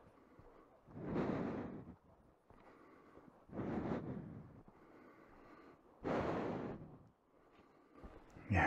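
Heavy breathing close to the microphone: three long exhalations about two and a half seconds apart.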